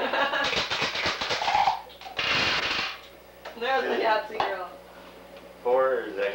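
Voices and laughter around a table, with a rapid rattle in the first second and a half and a short hissing burst about two seconds in.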